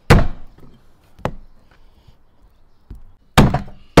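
A heavy kitchen knife chopping lamb ribs into short pieces on a plastic cutting board: three hard chops a second or two apart, the first and last the loudest.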